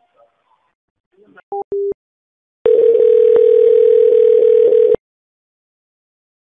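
Telephone line tones: two short beeps, the second lower than the first, then a steady single-pitched tone for a little over two seconds with a few faint clicks, which stops abruptly. These are the sounds of a phone call between one call ending and the next being answered.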